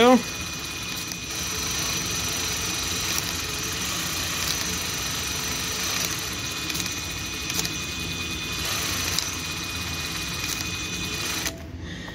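Axial Capra RC crawler's electric motor and transmission running steadily on the bench, driveshafts spinning, with a steady whine over gear noise. It stops shortly before the end.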